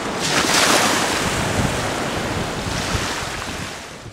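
Ocean surf on a sandy beach, with wind blowing across the microphone; a wave swells up loudest about half a second in, then the wash eases off slowly.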